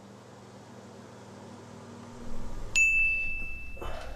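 A single bright phone notification ding, as of an incoming text message, about three quarters of the way in: one clear high tone that rings steadily for about a second and then stops.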